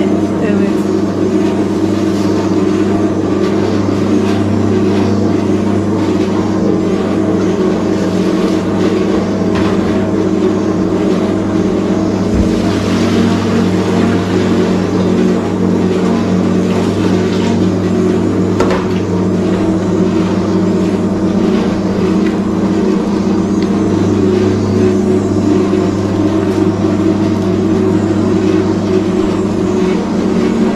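Electric spiral dough mixer running steadily, its motor humming loud and even while the hook kneads a large batch of sourdough bread dough in the steel bowl.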